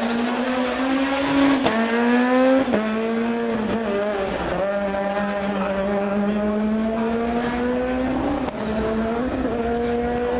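Rally car engine at full throttle, its note climbing and dropping sharply at quick gear changes about two and three seconds in and again near five seconds, then holding a long, slowly falling note before picking up again near the end.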